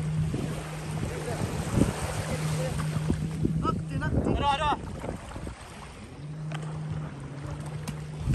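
A distant jet ski's engine drones as a steady low hum, dropping out for about a second just past the middle, over wind on the microphone and splashing water. A voice calls out briefly about four seconds in.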